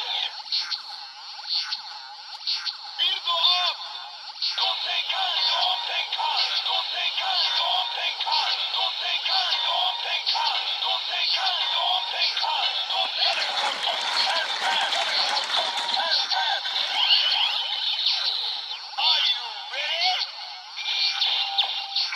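Bandai DX Build Driver toy's small speaker playing its electronic music with a recorded voice, thin and tinny, after the bottle is inserted and the lever cranked.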